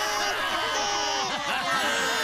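Several childlike cartoon voices crying together, many long wavering wails overlapping at once.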